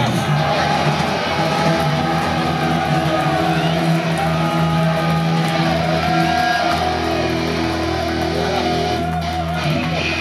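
Distorted electric guitars and bass guitar through a live PA, holding long sustained droning notes without a beat. The low note changes a few times.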